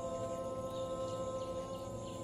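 Meditation music: a sustained drone of several steady ringing tones, like a singing bowl, slowly fading.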